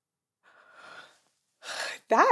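A woman's breathing, with no pitch to it: a faint breath about half a second in, then a louder, quick gasp of breath near the end.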